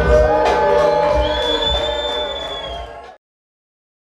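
Hip-hop beat with heavy bass and held synth tones, played loud over a club PA. It fades and then cuts off abruptly to silence a little after three seconds in.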